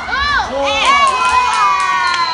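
Spectators shouting and cheering at a grappling match, several voices at once, with one long drawn-out yell starting about a second in.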